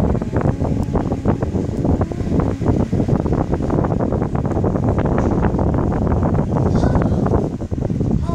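Microphone handling noise from a phone whose lens and microphone are covered: a loud steady rumble with dense crackling and clicking as the microphone is rubbed.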